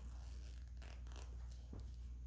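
Faint scratchy rustling and a click over a steady low hum: handling noise from a phone held close to the microphone.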